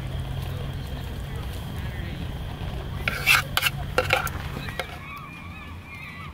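A metal utensil clinks several times against a small camp frying pan holding frying kimbap slices, over a steady low hum. Birds call in the background near the end.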